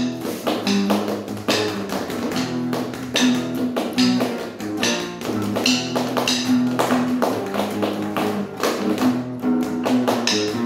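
Acoustic guitar played in a driving rhythm of chords and notes, accompanied by percussion struck with drumsticks, giving sharp bright hits about every second.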